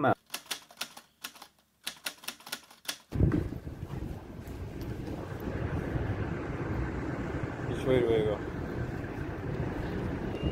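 For about three seconds, a quiet run of sharp, irregular clicks. Then a sudden switch to a steady, low rumble of airport apron noise from ground vehicles and engines, lasting to the end.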